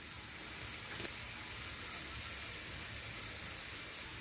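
Food sizzling in frying pans, a steady faint hiss, with a small click about a second in.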